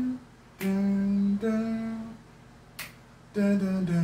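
A man humming a slow wordless melody unaccompanied: two held notes stepping up, a pause, then a phrase stepping down near the end. A single sharp click, like a finger snap, falls in the pause.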